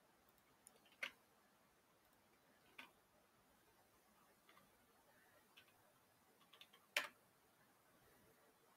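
Faint clicks of a computer mouse and keyboard over near silence: a handful of short, sharp clicks spread unevenly, the loudest about a second in and about seven seconds in.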